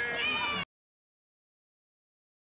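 A short pitched call, voice-like, cut off abruptly just over half a second in, followed by dead silence.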